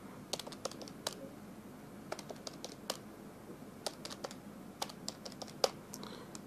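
Keys of a handheld calculator being pressed: short sharp clicks in quick irregular runs, coming in several clusters as figures are entered.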